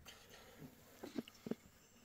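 Near silence: room tone with a few faint, very short ticks or rustles in the middle.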